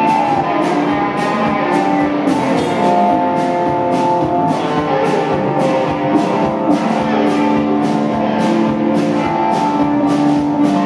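Live rock band playing an instrumental stretch of a Southern rock song, with no vocals: electric guitars playing sustained notes over a steady drum beat with cymbal hits.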